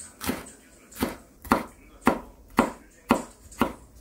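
Kitchen knife slicing red and green chili peppers on a wooden cutting board: about seven sharp knocks of the blade on the board, roughly two a second and unevenly spaced.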